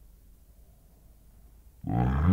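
Faint low hum and tape noise, then near the end a man's voice starts abruptly and loudly with a drawn-out sound that falls and rises in pitch.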